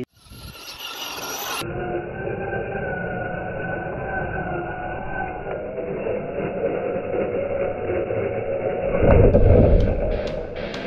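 Radio-controlled short-course truck driving over grass, its motor whining steadily with a slightly wavering pitch. Near the end there is a louder low rush.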